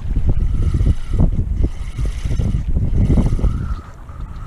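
Wind buffeting the microphone in gusts over open, choppy water, with small waves lapping against the drifting boat. It eases near the end.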